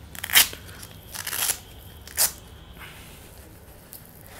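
Hook-and-loop (velcro) wrist strap of a motorcycle glove being pulled open and pressed, giving three short ripping, crackling bursts, the middle one the longest.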